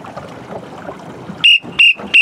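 Two short, high-pitched signal beeps about a third of a second apart near the end, over a low hiss of wind and water.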